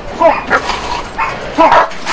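A large dog barking, about four short barks in under two seconds.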